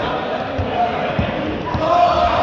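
A group of people running on a sports hall floor: scattered thuds of footsteps, several within two seconds, with voices calling out over them, echoing in the large hall.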